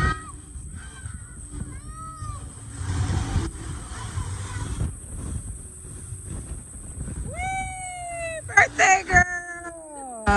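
Children's high-pitched shouts and squeals at play in a splash pool, over a steady low background rumble. Near the end one child gives a single long call that falls slightly in pitch, followed at once by several short, louder shrieks.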